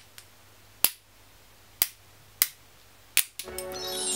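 Two magic-trick rings knocked together, four short sharp clicks about a second apart, as they are worked into the linked-rings trick. Music comes in near the end.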